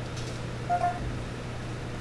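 A short electronic beep from the G-scan scan tool's touchscreen a little under a second in, as a menu selection is confirmed, over a steady low electrical hum.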